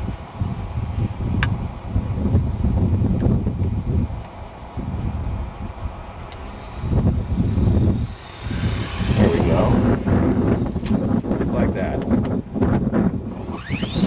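Wind buffeting the microphone over the faint whine and whoosh of a 450-size electric RC helicopter's rotor coming down in autorotation with the motor cut, falling in pitch in the second half. Right at the end a rising whine begins as the motor spools back up.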